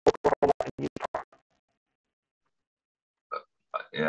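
A person's voice broken into rapid, choppy bursts, about eight a second with dead gaps between them, for the first second and a half. Then silence until a voice comes in near the end.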